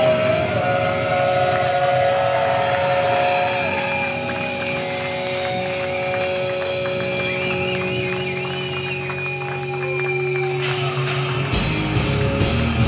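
Live death metal band with electric guitars and bass held in long ringing notes and feedback, the drumbeat stopped. Near the end the drums come back in with a quick run of drum and cymbal hits.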